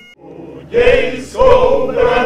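A men's choir singing unaccompanied. The voices come in about two-thirds of a second in and sing in short held phrases with brief breaths between them.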